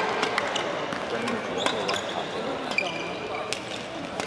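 Badminton rackets striking a shuttlecock during a fast doubles rally, a quick series of sharp hits, with shoes squeaking briefly on the court floor.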